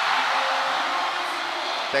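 Basketball arena crowd cheering after a made basket: a steady, even wash of many voices.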